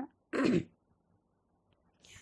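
A woman briefly clears her throat: one short sound with a falling pitch, about a third of a second in.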